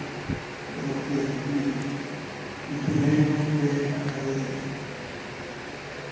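A man's voice singing unaccompanied in two long, slow phrases with held notes, in a chant-like style.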